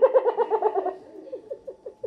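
A woman laughing: a quick run of rapid laughs that tapers into a few softer, spaced-out chuckles and fades out before the end.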